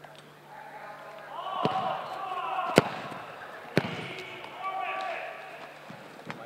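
Three sharp thuds of footballs being kicked, the loudest about halfway through, echoing in a large indoor hall, with voices calling out between them.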